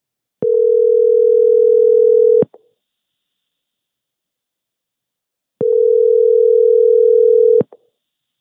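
Telephone ringback tone of an outgoing call: the called line is ringing, heard as two steady tones of about two seconds each, a little over three seconds apart.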